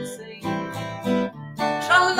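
Acoustic guitar strummed in a steady rhythm, about two chord strokes a second, accompanying a children's song between sung lines.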